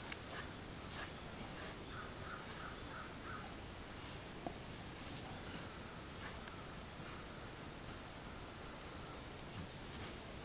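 Steady high-pitched drone of an insect chorus, with short high chirps repeating every second or so over it.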